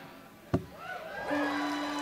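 Live band's song just ended: a single sharp thump about half a second in, then a steady low note held on an instrument, with faint crowd voices above it.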